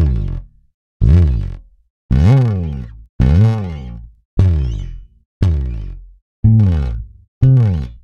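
Sampled electric bass slide effects from the Ample Bass P Lite II virtual Precision bass: eight separate string slides, about one a second, each a quick glide in pitch that rings and fades away.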